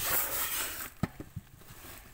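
Rustling and scraping of movement against a concrete pipe as someone climbs in, followed by a sharp knock about a second in and a couple of lighter ticks.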